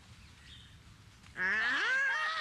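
A person's loud scream starting about one and a half seconds in, rising sharply in pitch and then held with a wavering pitch.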